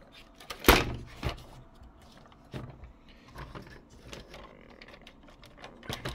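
Hard plastic toy truck and trailer being handled: scattered light clicks and knocks as the trailer's adjustable wheels are pushed down and set. A sharper knock comes about a second in.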